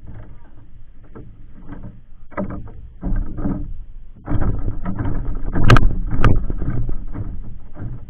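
Irregular knocking and clattering on the wooden planks of a fishing platform as a freshly caught queenfish is picked up and handled. The sounds get busier about halfway through, with two sharp, loud knocks a little after that.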